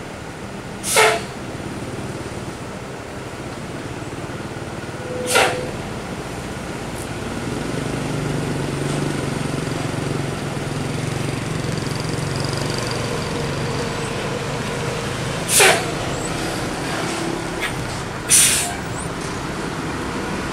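Hino coach bus's diesel engine running as it works round a hairpin and comes close, growing louder from about eight seconds in. Four short, sharp hisses cut through it, typical of the bus's air brakes.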